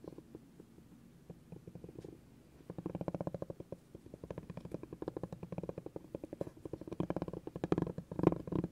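Spiky massage ball rolled by hand across a wooden board, its spikes tapping the wood in a fast, even patter. It is softer for the first couple of seconds, then louder and denser from about three seconds in.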